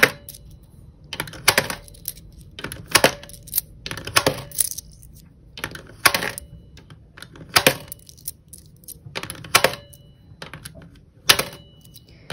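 Pennies pushed one at a time through the slot of a digital coin-counter jar, each one a sharp click of the slot mechanism and a clink as the coin drops onto the pennies inside. The clicks come in close pairs about every one and a half seconds.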